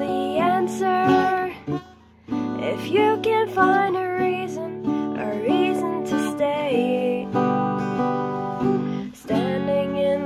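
Acoustic guitar strummed in chords with a voice singing along. The strumming briefly stops about two seconds in, and again shortly before the end.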